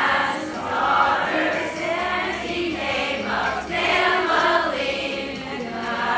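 A large group of girls and young women singing together as a choir, phrases swelling and fading about once a second.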